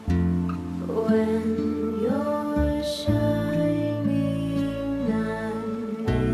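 Slow, gentle lullaby song: a sung melody over plucked acoustic guitar, with the voice sliding up into one long held note in the middle.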